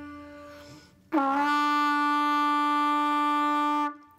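A piano note D fades away over the first second. Then a B-flat trumpet, played with valves one and two for written E, holds a steady note for nearly three seconds on the same pitch as the piano's D, and the note cuts off just before the end.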